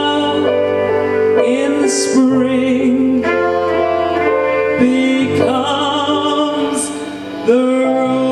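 A woman singing long held notes with vibrato into a stage microphone over instrumental accompaniment. Near the end the sound dips briefly before she comes in on a new note.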